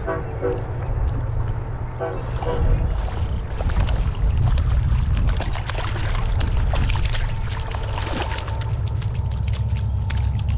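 A hooked largemouth bass splashing and thrashing at the surface as it is reeled in close to the bank, with crackling from about three and a half to eight and a half seconds in. A steady low rumble of wind on the microphone runs underneath.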